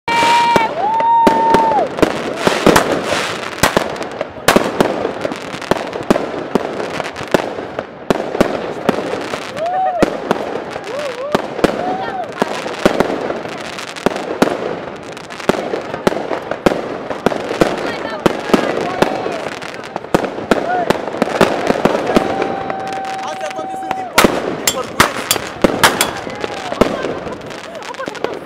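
Fireworks going off in a dense run of sharp bangs and crackles, with a cluster of louder cracks about 24 seconds in.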